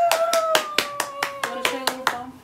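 Quick, even hand claps, about six a second, under a long drawn-out excited "yeah" cry from a woman that slowly sinks in pitch.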